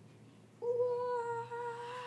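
A person's voice humming one long, steady high note, starting about half a second in.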